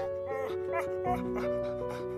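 A cartoon puppy whimpering briefly over soft background music with long held notes.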